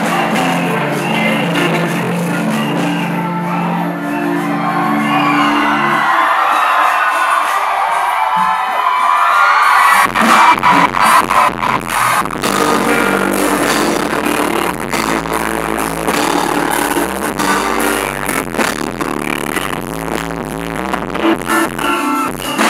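Live band music with singers: sustained low chords at first, then a thinner stretch, and about ten seconds in the drums and bass come in with a steady beat.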